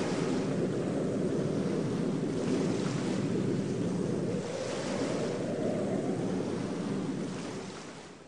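Stormy sea: waves surging with wind, swelling a few times, then fading away near the end.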